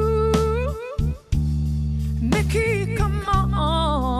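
Live pop ballad: a female singer holds long, wavering sung notes over electric guitar and bass guitar accompaniment. The music drops out almost completely for a moment about a second in, then picks up again.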